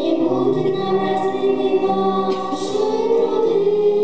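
Three young girls singing a song together into microphones, holding long notes.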